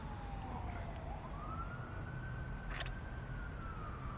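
A distant siren wailing slowly: a single tone slides down, sweeps back up a little after the first second, holds, then slides down again, over a low steady rumble.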